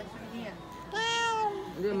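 A domestic cat meows once, about a second in: a single meow of about half a second, its pitch rising slightly and then falling.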